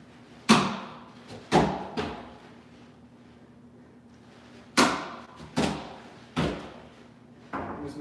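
Snowboard training board knocking down onto a balance bar and the floor mat as jib tricks are done: two runs of three sharp knocks, about a second apart, each with a short ringing tail.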